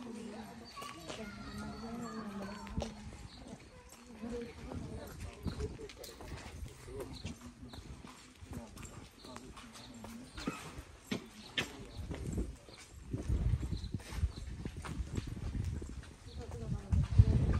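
Indistinct voices, clearest in the first few seconds, with scattered clicks and taps throughout and a low rumble in the last few seconds.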